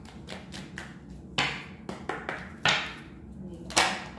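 A tarot deck being shuffled by hand: a quick run of card clicks, with a louder slap about every second.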